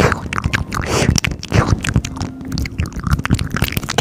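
A close-miked ASMR trigger: a fast, dense run of clicks, crackles and scratching sounds right at the microphone.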